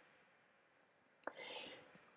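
Near silence, broken a little past a second in by a faint mouth click and a short, soft intake of breath.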